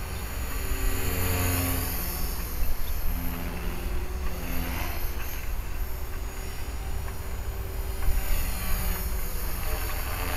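HK-450 electric RC helicopter flying loops at a distance, its rotor and motor hum shifting in pitch as it manoeuvres, under wind buffeting the microphone.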